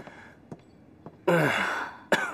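A man lets out one loud, breathy sigh a little past halfway through, its pitch falling as it trails off.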